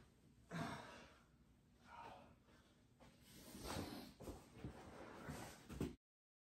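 Faint heavy breathing and sighs from a winded wrestler, several separate breaths spread through.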